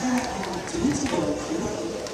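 Speech: a stadium public-address announcer's voice.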